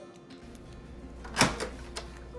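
Background music under a low steady hum, with one sharp click of a hotel room door's latch about a second and a half in, followed by a smaller one.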